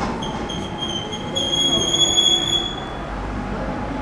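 A high-pitched metallic squeal that holds one pitch, starting just after the beginning, loudest in the middle and dying away about three seconds in, over a low background rumble.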